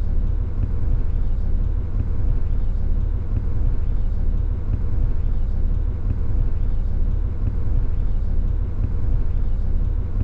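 Steady low rumble of a moving road vehicle heard from inside its cabin, with a faint steady hum running through it.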